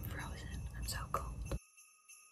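A woman speaking softly, close to a whisper. Her voice cuts off abruptly about a second and a half in, leaving only a faint steady tone.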